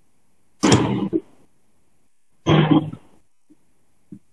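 Two short bursts of a person's voice, each under a second and about two seconds apart, heard over a call microphone.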